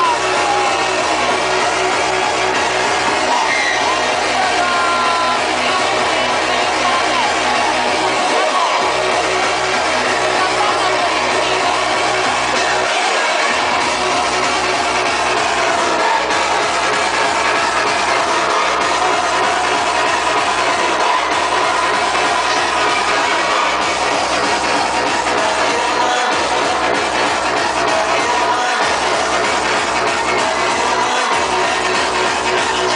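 Hardcore techno played loud over a club sound system, with a fast, steady kick-drum beat. The bass drops out briefly twice, about eight and thirteen seconds in.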